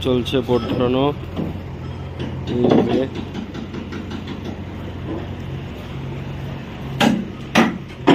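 Steady low machinery hum of a construction site, with voices in the first few seconds and two sharp hammer blows on metal formwork near the end.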